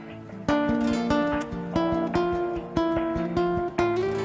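Background music: acoustic guitar, notes and chords plucked about twice a second, each ringing on.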